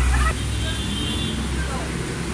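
Steady low rumble of street traffic with faint indistinct chatter; the rumble eases a little about a third of a second in.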